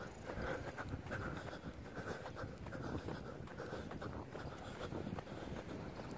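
Heavy breathing and footfalls of a person jogging on sand while carrying the recording phone, in a rough repeating rhythm.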